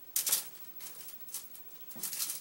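Aluminium foil lining a cookie sheet crinkling and rustling as hands handle raw crescent-roll dough on it, in a few short bursts, the loudest near the start.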